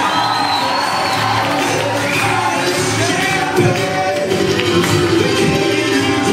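Live acoustic band playing: strummed and picked acoustic guitars with a sung vocal through the PA, heard over a crowd in a room.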